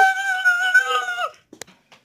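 A child's voice drawing out a long, high-pitched 'meow', imitating a cat, held on one steady note until just over a second in, followed by a single click.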